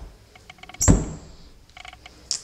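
A single dull thunk about a second in, the loudest sound here, with a few faint knocks and clicks around it.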